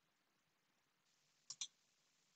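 Near silence, broken by two faint quick clicks close together about a second and a half in.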